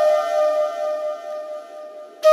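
Soundtrack music: a single held flute note that fades steadily away.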